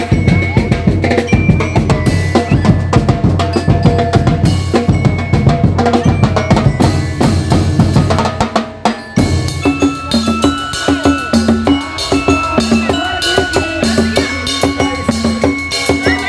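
Percussion band drumming on a steel oil-drum bass drum, congas, snare drums and cymbals in a fast, dense beat. About nine seconds in the sound changes abruptly to a different, more regular drum pattern.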